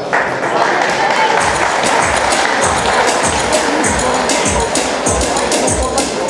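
Crowd noise, cheering and applause, joined about a second and a half in by music with a steady thumping beat, about two beats a second.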